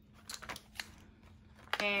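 Faint handling of a small sample pouch: a few short crinkles and ticks in the first second, then quieter rustling.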